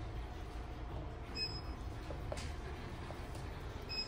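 Shop background ambience: a low steady rumble, with a few faint clicks and short faint high tones about one and a half seconds in and again near the end.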